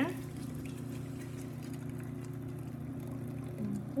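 Thick puréed butternut squash soup pouring from a blender jar into a pot, with a few faint soft splatters, over a steady low hum.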